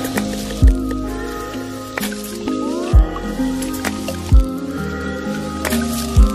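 Music with steady, stepping tones that slide up and down in pitch, over a low drone, broken by four deep, loud bass hits that drop in pitch.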